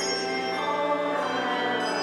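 Instrumental hymn music: sustained, held chords with bell-like tones and no audible singing.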